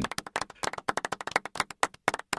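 Applause from a few people clapping: separate, uneven claps, about ten a second.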